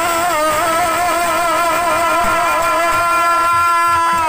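A male singer holds one long note in a dollina pada folk song. The pitch wavers with vibrato for the first couple of seconds, then holds steady.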